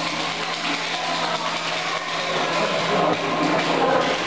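Large-format solvent inkjet printer running, a steady mechanical whir with a low hum underneath.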